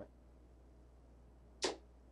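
A soft-tip dart striking an electronic dartboard, heard as a single sharp clack about one and a half seconds in. The hit scores 20.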